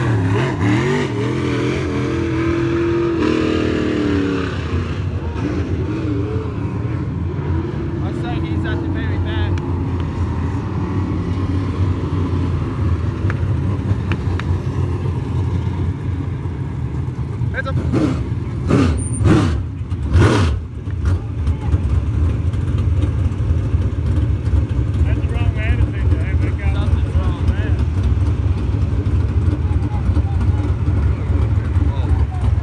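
Dirt-track limited late model race cars' steel-block V8 engines running, one passing close by with its pitch rising and falling in the first few seconds, then a steady drone of the field. A few short loud knocks come about two-thirds of the way through.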